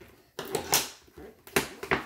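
Plastic toy packaging being handled and pried at: a few sharp clicks and crinkly rustles of plastic.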